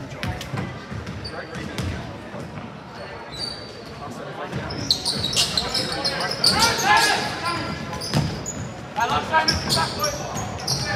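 Basketball bouncing on a hardwood gym floor, with sneakers squeaking and players and spectators shouting. The shouting grows louder from about halfway through as the shot goes up and players fight for the rebound.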